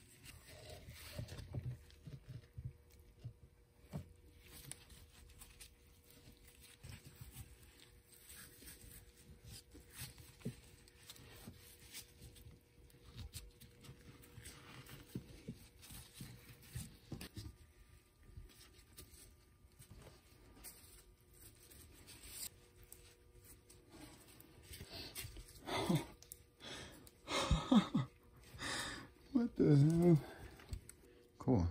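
Woven exhaust heat wrap, soaked with water, being wound by hand around a stainless steel turbo manifold pipe: soft rustling and scraping of the fabric against the metal with scattered small clicks, getting louder near the end.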